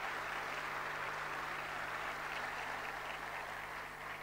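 Audience applause, a steady even patter of many hands clapping that slowly fades near the end, over a low electrical hum.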